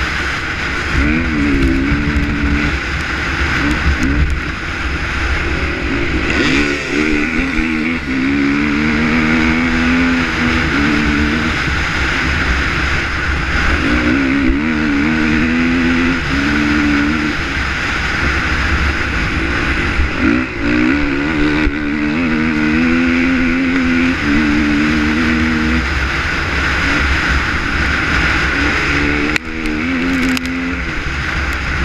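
KTM 450 XC four-stroke single-cylinder dirt bike engine revving hard at racing speed, its pitch climbing and dropping again and again through the gears. Heavy wind rushes over the helmet-mounted camera throughout.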